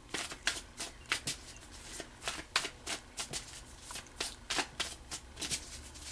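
A deck of tarot cards being shuffled by hand: packets of cards dropping from one hand onto the deck in the other, making sharp irregular slaps and flicks at about three a second.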